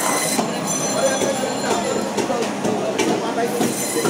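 Electric band saw (fish bone saw) running, its blade cutting through whole silver carp: a steady low motor hum under a constant high metallic whine.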